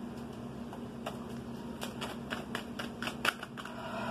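A tarot deck being shuffled by hand: a run of quick, irregular card clicks, busiest through the middle.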